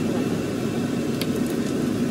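A steady low mechanical whir, like a running fan, with one light sharp click a little over a second in.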